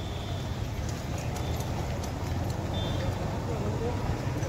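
Steady low background rumble with distant voices, and a few faint clicks from the metal end fittings of a disc insulator string being handled.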